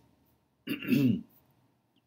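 A man clearing his throat once, briefly, about two-thirds of a second in.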